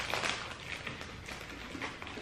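Quiet eating and handling sounds: shortbread biscuit being bitten and chewed, with a few soft clicks from a plastic biscuit tray being handled.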